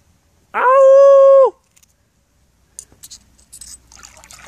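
A single loud, high, steady cry lasting about a second, rising into its pitch and dropping at the end. Near the end come faint clicks of wet stones being handled.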